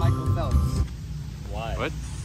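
Background music with a steady low beat that cuts off about a second in, followed by a short exclaimed voice.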